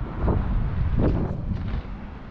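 Wind buffeting the microphone outdoors, a loud irregular low rumble.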